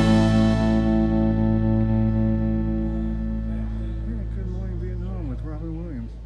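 Background music ending on a long sustained chord that slowly fades away. A man's voice comes in faintly over the fade in the second half.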